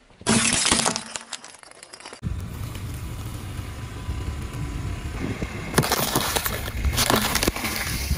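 Small glass light bulbs bursting and shattering under a car tyre, a loud crackle of breaking glass about a quarter-second in that dies away within a second. After a cut, a tyre rolls over and squashes soft and brittle items with a steady low rumble and two louder spells of crunching and crackling near the end.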